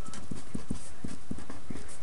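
Quick, irregular soft taps of a pen writing on a surface, several a second, as the answer is written out.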